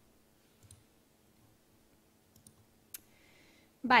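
A few faint, short computer-mouse clicks against quiet room tone, the sharpest about three seconds in, as the presenter's screen changes from a web page to a slide.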